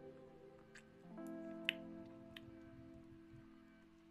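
Quiet background music of soft sustained chords, the chord changing about a second in, with a few faint clicks over it.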